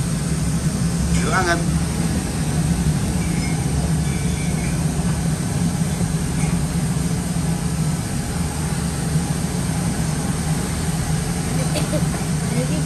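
A steady low engine hum, like a motor idling, with a brief faint voice about a second in.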